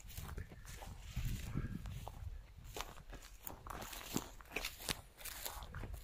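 Faint footsteps through dry grass and dead weeds, an irregular scatter of small crackles and rustles.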